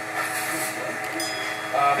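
Small petrol lawn mower engine running steadily in the background, a constant droning hum.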